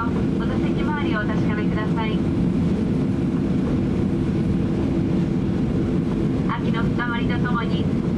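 Steady low cabin rumble inside a Boeing 737-800 taxiing after landing, from its CFM56 engines at taxi power and the rolling airframe.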